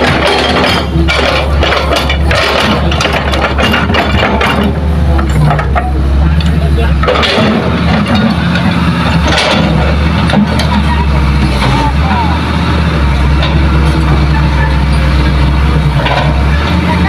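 Hitachi hydraulic excavator's diesel engine running steadily under load, with soil and rocks clattering into the dump truck's steel bed: a dense run of knocks in the first five seconds and a few more drops later.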